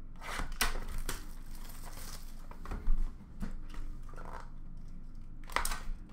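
Trading cards and their plastic and paper packaging being handled in a bin: a low rustle and crinkle with several light clicks, the loudest about three seconds in and two more near the end.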